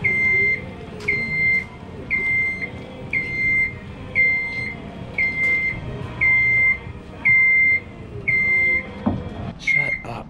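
Genie scissor lift's alarm beeping: a steady, high electronic beep about half a second long, repeating about once a second, sounding because the lift has been left switched on.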